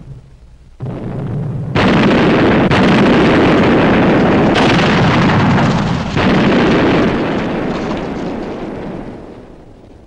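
Film-soundtrack artillery bombardment: cannon shots and shell explosions. A blast about a second in is followed by several more that merge into one sustained loud rumble, which dies away over the last few seconds.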